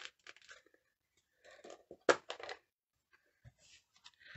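Quiet handling of craft supplies on a desk, with one sharp plastic click about two seconds in as a stamp ink pad's case is opened, and a few soft knocks near the end.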